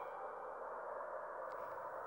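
A faint, steady background tone with a soft hiss and no distinct event.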